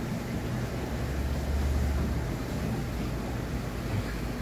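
Steady low rumble with an even hiss: background noise in an aquarium shop, where tanks and their equipment are running. The rumble swells slightly about a second and a half in.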